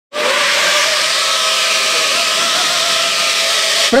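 Small ducted-propeller quadcopter drone's electric motors and propellers running at a steady speed: a loud, even buzz with a slightly wavering whine, cut off suddenly near the end.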